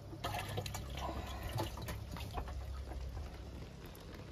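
Water sloshing and splashing in a boat's live well as an arm reaches in to grab bass, with small irregular drips and splashes.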